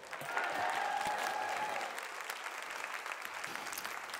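Audience applauding. It starts suddenly, is loudest for the first couple of seconds, then eases off.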